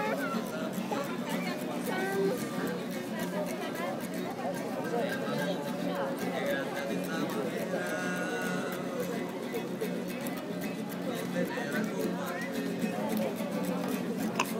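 Many diners talking over one another in a steady hubbub, with music playing in the background and light clinks of tableware.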